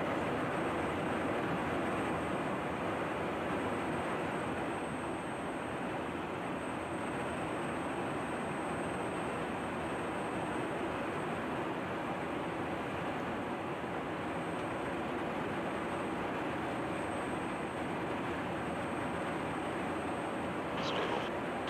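Steady noise of jet aircraft in flight: an even rush of engine and airflow noise, with a faint thin high whine above it.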